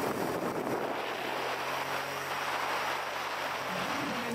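Steady rush of wind and road noise from a vehicle moving at racing speed, with a faint low hum setting in about a second in.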